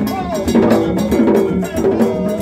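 Gagá drumming: several hide-headed hand drums beaten fast with bare hands, together with a bright, metallic, cowbell-like clang in the rhythm. Held and gliding pitched tones sound over the beat.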